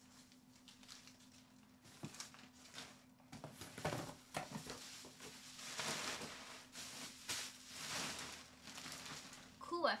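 Packaging rubbish being stuffed into a bag: faint, irregular rustling and crinkling of plastic and paper in several separate bursts, over a steady low hum.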